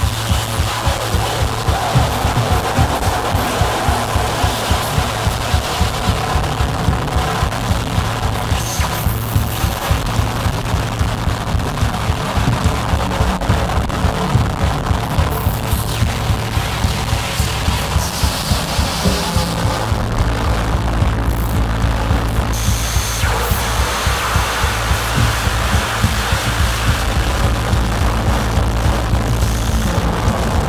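Live experimental music from an acoustic drum kit and electronics: a steady, fast pulse of drum hits over a loud droning synthesizer bass. About twenty seconds in, the drone shifts down to a deeper note.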